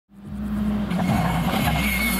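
Škoda Fabia rally car running hard at speed on a stage, fading in from silence over the first half-second.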